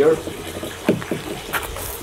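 A plastic rod holder clacks once as a fishing rod is settled in it. Near the end comes a brief scuff of footsteps on gravel.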